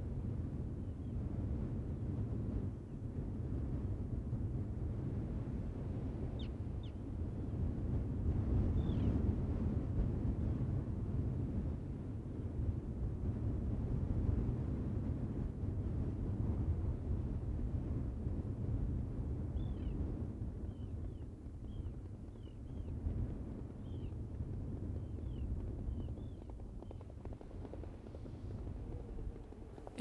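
Steady low rumble of wind and surf on a beach, with short high bird calls: a few about six to nine seconds in, and a quick run of about eight between twenty and twenty-seven seconds.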